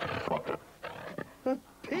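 A pig grunting, in short rough bursts at the start and again about a second in, with a man's voice calling out near the end.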